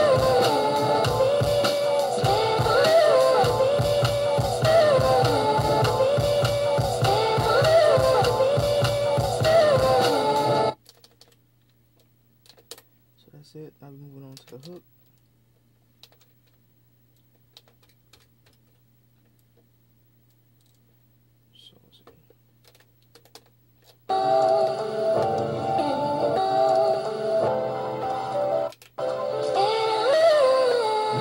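A sampled soul record with singing over a steady beat playing back from an Akai MPC 1000. It stops suddenly about ten seconds in, leaving a faint low hum and scattered soft clicks of pads and buttons being pressed for about thirteen seconds, then the music starts again and drops out once briefly near the end.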